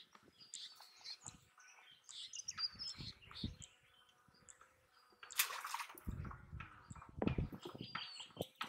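Small birds chirping intermittently, with scattered faint knocks and a brief louder rustling burst a little past halfway.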